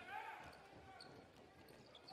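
Faint basketball arena sound during play: a low crowd murmur in a large hall, with a few faint short ticks from the ball bouncing and shoes on the court.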